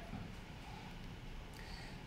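Quiet room tone: a faint, steady hiss with no distinct events.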